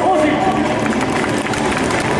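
A stadium public-address announcer's voice introducing a player in the starting lineup, heard over a steady haze of crowd noise in the ballpark.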